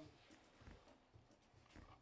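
Near silence: meeting-room tone with a few faint low bumps.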